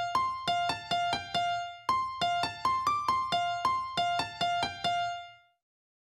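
Grand piano instrument in FL Studio Mobile playing back a short single-note melody of quick notes from the piano roll. It plays in two runs, the second starting about two seconds in, and the last note dies away a little before the end.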